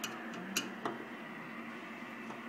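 Three light clicks in the first second over a steady low electrical hum.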